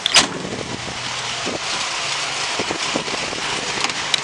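A Mercedes Sprinter van's door being worked: a loud metallic clunk about a quarter-second in, followed by a steady hiss of noise with a few light knocks and clicks.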